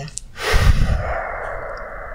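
A long breath out: a loud rush of air that hits the microphone at first, then fades to a steady airy hiss.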